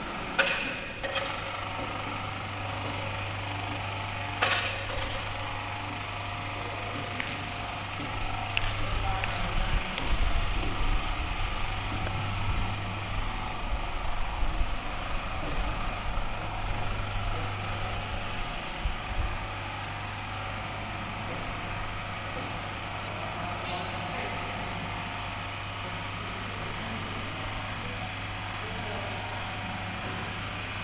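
Electric hoist motor of a rope-suspended working platform running with a steady low electric hum. The hum breaks off for a moment about two-thirds through, with a few sharp knocks of metal hardware.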